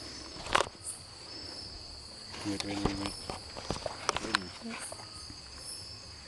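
Night insect chorus, a steady high-pitched trill, with several sharp knocks and rustles of handling as the camera is moved, the loudest about half a second in.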